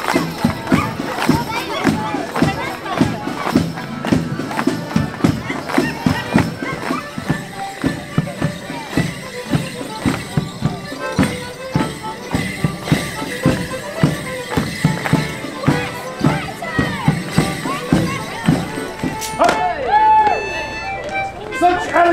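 A folk dance band playing a morris tune, with the dancers' feet striking the paving in time as a steady beat. Near the end the tune changes to a different one.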